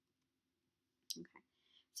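Near silence with a faint hum, then a single sharp computer click near the end as the presentation slide is advanced.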